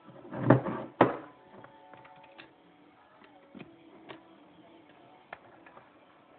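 Handling noise from a QHY8 cooled CCD camera being gripped and set on a desk: two loud knocks about half a second and a second in, then a few light clicks.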